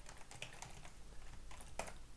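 Computer keyboard typing: a run of faint, irregular keystrokes, with one louder key press near the end.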